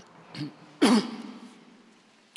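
A man clearing his throat into a microphone: a short soft sound, then one loud rasp about a second in that fades away in the room's echo.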